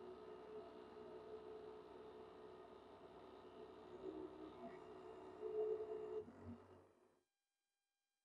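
A faint steady hum of a few even tones, with a few soft bumps, cutting off to dead silence about seven seconds in.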